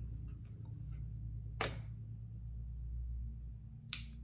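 Steady low hum with faint brief rustles, and one short sharp whoosh about one and a half seconds in.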